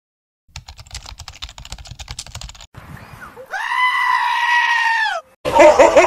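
A puppy's long, high howling cry, held steady for nearly two seconds and dropping in pitch at the end, after some soft rustling and clicks. Near the end a gull's loud, wavering screeching calls break in, the loudest sound here.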